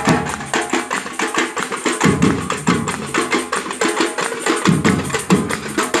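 Carnival batucada percussion group playing a fast, steady samba rhythm: dense strikes of small drums and hand percussion over recurring deep drum beats.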